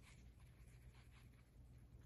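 Near silence, with faint scratching of a paintbrush stirring a gritty glitter and glue mix in a small plastic tub.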